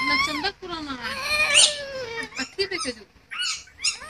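Drawn-out, wordless vocal sounds that glide up and down in pitch, broken by a short gap about half a second in and fading after about three seconds.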